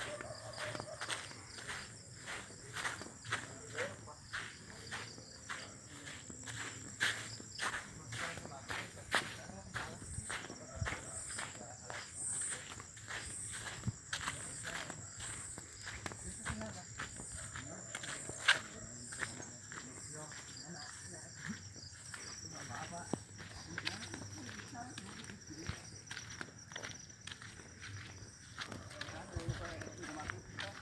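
Footsteps of a person walking at a steady pace, about two steps a second, with a faint steady high-pitched whine behind them.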